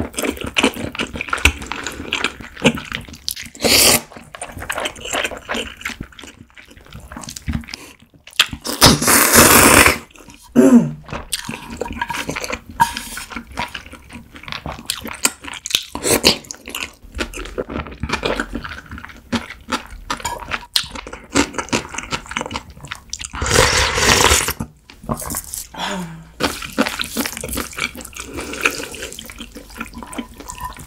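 A person slurping cold buckwheat noodles (naengmyeon) from icy broth and chewing them wetly. Several loud slurps, the longest lasting over a second, are separated by smacking chewing sounds.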